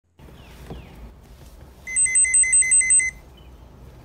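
Electronic beeper sounding a quick run of about seven high-pitched beeps in just over a second, starting about two seconds in.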